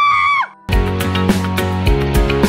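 A loud, high, sustained scream that cuts off about half a second in; after a brief silence, outro music begins.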